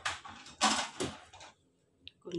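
A few short scraping, clattering noises of a kitchen utensil working in a cooking pot of boiled potatoes with butter and cream, as the mashing begins.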